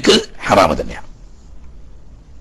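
A man's voice lecturing for about the first second, then a pause with only a faint low background hum.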